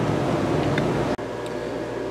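Steady low mechanical hum over background noise. It drops suddenly to a quieter hum a little over a second in.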